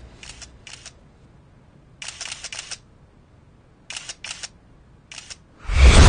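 Camera shutter clicks, single shots and then quick bursts of several frames at a time. Near the end a loud low boom swells in.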